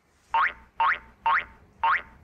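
Cartoon-style boing sound effect, four identical short rising twangs about half a second apart.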